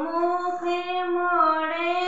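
A woman singing a Rajasthani folk ajwain geet, the song sung at a son's birth, unaccompanied, holding one long steady note.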